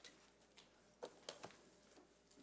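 Near silence: room tone, with a few faint clicks about a second in.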